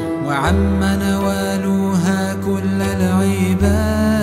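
Sufi devotional music: a bowed campanula, a cello-like string instrument, holding long low notes that change about half a second in and again near the end, with a higher melodic line gliding and wavering above.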